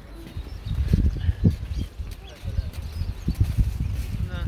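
Irregular low thuds and rumble of handling noise on a handheld phone's microphone as it is carried along at walking pace, with faint voices in the background.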